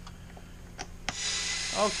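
A few light, sharp clicks about a second in, of a hand driver working on a Stihl MS290 chainsaw's plastic housing, over a low steady hum.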